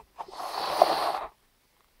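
A child's breathy exhale, about a second long, ending abruptly.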